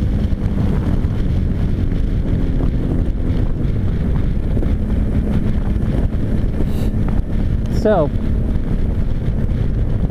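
Steady rush of wind noise on the microphone at road speed, with the Suzuki V-Strom 650's V-twin engine and tyre noise running underneath.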